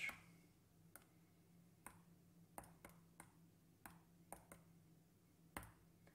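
Faint, irregularly spaced clicks, about nine in five seconds, as keys are pressed one by one on an on-screen calculator to enter an expression, over a faint steady low hum.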